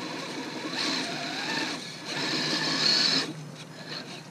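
Traxxas UDR RC truck's electric motor and drivetrain whining in two bursts of throttle, each about a second long, as its tyres work on snow.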